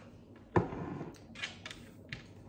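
A plastic cup set down on a wooden tabletop with one sharp knock about half a second in, followed by a few faint short scratches.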